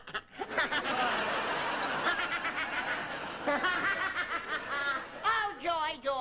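Studio audience laughing, with a man's loud laughter rising over it from about two seconds in.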